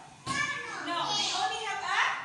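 Young children's voices talking in a classroom.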